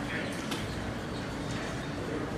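Steady background noise of a subway platform with a stopped subway train standing with its doors open, with faint voices in the background.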